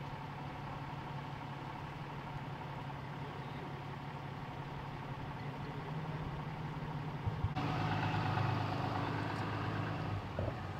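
A vehicle engine idling steadily with a low hum. About three-quarters of the way through there are a couple of short knocks, and then a louder idling engine sound takes over abruptly.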